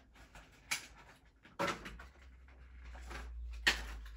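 Hands handling a small cardboard toy-car box: a few short, quiet scrapes and taps, with a low rumble in the second half.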